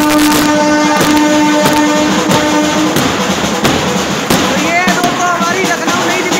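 An Indian Railways locomotive's horn sounds a steady blast, broken briefly about a second in and stopping about three seconds in, over the drum beats of a brass band. The band's wavering melody and crowd voices follow.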